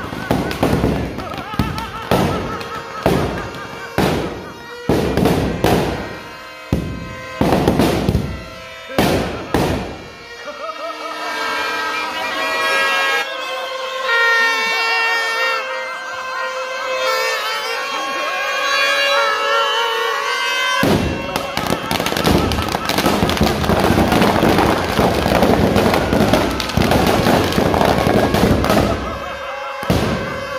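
Firecrackers bursting in a rapid string of sharp bangs for about ten seconds. Music and crowd voices follow, then a dense crackling noise from about two-thirds of the way in.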